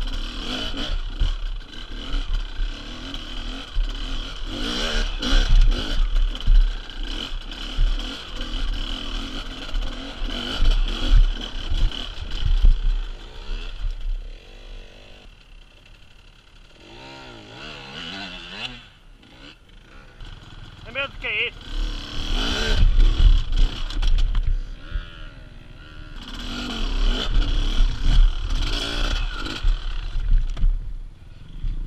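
Enduro dirt bike engines revving up and down, with heavy low rumble on the microphone. The engines drop back for several seconds about midway, then rev hard again.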